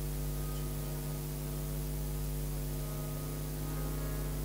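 Harmonium sustaining a held chord as a steady drone, with no singing over it.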